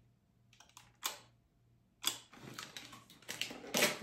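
A single sharp click of the Holga camera's simple shutter about a second in. Then the paper tab and peel-apart Polaroid film are drawn out through the back's rollers, a rustling slide that ends in a louder pull near the end as the developer pod is spread.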